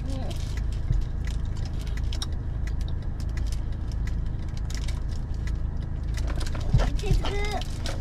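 Steady low rumble of a car idling, heard from inside the cabin, with scattered light clicks and rustling over it.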